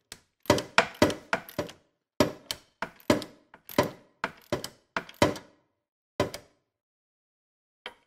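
A 3/8-inch drive ratchet with a 3/4-inch socket clicking in short bursts of sharp clicks as it runs a new coolant temperature sensor in the rest of the way until snug. The clicks stop about six seconds in.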